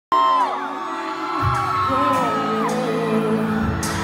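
Live pop concert music through a large venue sound system, recorded from the crowd: a synth intro with gliding tones, the bass and beat coming in about a second and a half in, and fans whooping and screaming over it.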